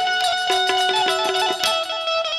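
Instrumental passage of Gujarati devotional folk music: a plucked string instrument plays a melody of held notes that step from pitch to pitch.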